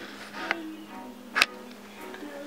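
Quiet background music with a few soft sustained notes, broken by two short clicks, the louder one about one and a half seconds in.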